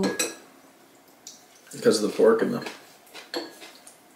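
A few light clinks of chopsticks against a small ceramic bowl, with a short murmur of voice near the middle.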